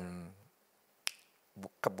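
A man's speech trails off, followed by a pause with a single sharp click near the middle, and the speech resumes near the end.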